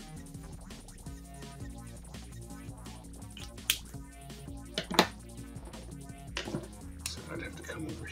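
Royalty-free background music with steady held tones, broken by a few sharp clicks between about three and a half and five seconds in.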